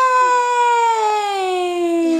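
A baby's voice: one long, loud held note that slides slowly down in pitch.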